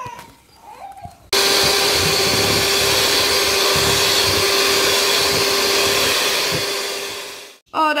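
Electric hand mixer beating egg-white icing in a stainless steel bowl: it switches on suddenly a second or so in, runs steadily with a constant hum, then winds down and stops near the end.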